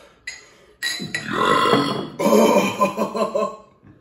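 Beer glugging out of a glass bottle into a glass as the rest of the bottle is poured. It starts about a second in, gulps on loudly for nearly three seconds and stops just before the end.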